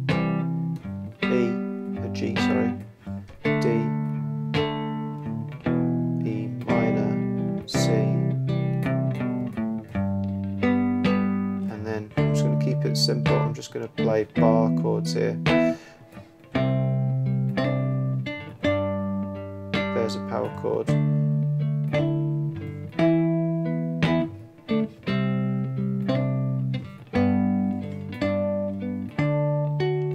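Three-string cigar box guitar in GDG tuning, played fingerstyle: a steady run of plucked chords in a soul-style progression, moving between low G shapes and higher full D and E minor chords, changing about every second.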